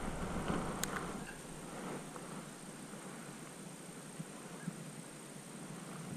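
Quiet open-air ambience on a lake: faint steady wind and water noise, with a single light click about a second in.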